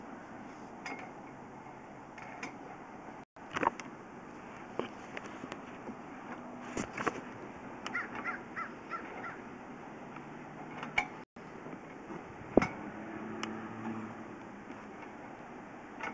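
Sewer inspection camera equipment being handled: scattered clicks and knocks over a steady hiss, the loudest a sharp knock about twelve and a half seconds in. A quick run of short high chirps comes near the middle.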